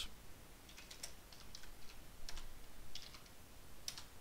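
Faint keystrokes on a computer keyboard as a short terminal command is typed, heard as small groups of light clicks.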